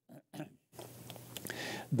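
A man's breathing and small mouth clicks in a pause between words: near silence at first, then a faint drawn breath with light clicks that runs into speech at the end.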